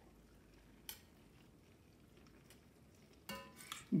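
Quiet kitchen handling at a pot: a single light click about a second in, and a brief ringing clink near the end.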